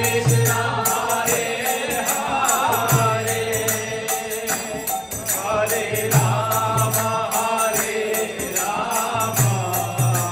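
Kirtan: a group of voices chanting devotional verses with harmonium, a two-headed mridanga drum and small hand cymbals (kartals). Low drum strokes come in clusters about every three seconds under the chanting.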